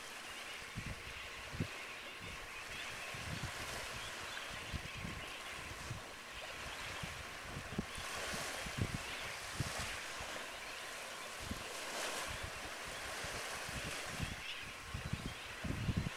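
Wind buffeting the camcorder microphone in irregular low thumps, over a steady rushing hiss of wind and distant surf.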